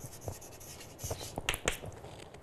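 Chalk tapping and scratching on a chalkboard as a word is written: a run of short clicks and scrapes, with a few sharper taps in the second half.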